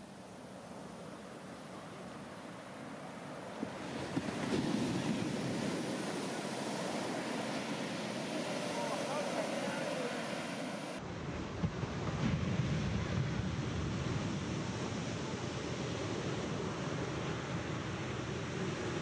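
Heavy shorebreak waves breaking and washing up the sand: a continuous rush of surf that grows louder about four seconds in and again around twelve seconds, with a few brief sharper crashes.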